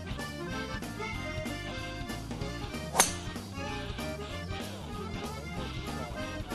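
Accordion music with a steady beat, and about halfway through a single sharp crack: a golf driver striking the ball off the tee.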